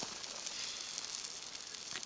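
Brisket sizzling over a wood fire on the grate of an open Weber kettle grill: a steady hiss.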